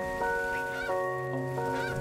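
Background music with sustained chords, over which geese honk: two short honks, the second near the end.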